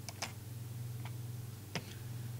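Computer mouse clicks: a quick pair near the start, then a fainter single click about a second in and a sharper one near the end, over a steady low electrical hum.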